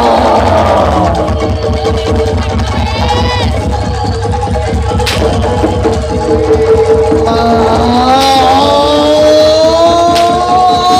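Live Jaranan Dor ensemble music: fast, steady drumming under a long held tone, with a wavering melodic line coming in about three-quarters of the way through.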